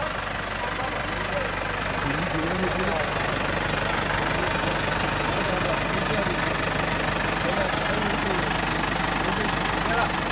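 A motor running steadily with a constant low hum, with faint voices over it.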